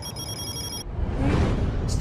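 Electronic notification-bell ringing sound effect, a rapid high-pitched pulsing ring that stops a little under a second in, followed by a swelling rush of noise from a glitch transition effect.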